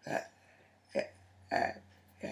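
A woman's voice making three short, unclear vocal sounds: one at the start, one about a second in, and one a little after that.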